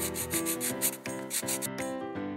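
Pencil-scribbling sound effect: a quick series of scratchy strokes, over keyboard background music.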